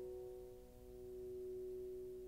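Held piano notes ringing out and slowly fading between phrases of a slow, quiet piano piece, one mid-pitched tone lasting longest, with no new notes struck.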